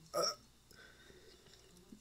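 A single short, breathy vocal "uh" from a man, lasting about a quarter of a second, followed by near silence.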